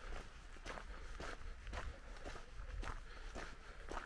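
Footsteps of a person walking at a steady pace, about two steps a second, over ground covered with dry fallen leaves.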